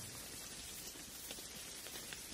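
Faint, steady rain-like patter with light scattered ticks, heard while the music drops out.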